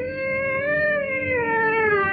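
A woman singing one long held note of a Hindustani raga, the pitch swelling slightly upward about half a second in and sliding back down.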